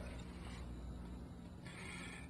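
Quiet pause: a faint, steady low hum under room tone.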